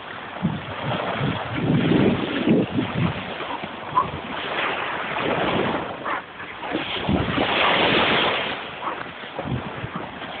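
Small waves washing onto a beach, with wind buffeting the microphone. The noise rises and falls in surges, loudest about two seconds in and again near the end.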